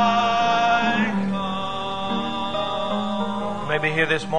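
Congregation singing a hymn, holding long sustained chords, with a change of chord about a second in.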